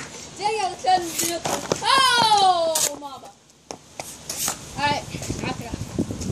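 Children shouting and yelling, no clear words, with one long, high cry falling in pitch about two seconds in, followed by a sharp click.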